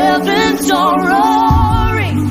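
Music: voices singing with vibrato over sustained low accompanying notes, which drop to a lower chord about one and a half seconds in.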